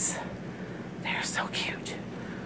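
A woman whispering softly, with sharp hissing consonants and no full voice.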